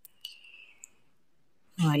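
Two faint sharp clicks in the first second, with a faint high thin tone between them; a man's voice begins near the end.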